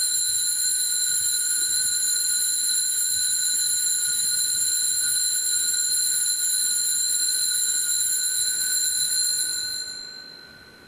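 Altar bells ringing on and on at the elevation of the chalice after the consecration, dying away near the end.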